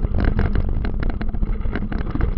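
Jolting, rattling noise and low wind rumble of a camera carried fast down a rough forest trail, with dense irregular knocks and no steady engine note.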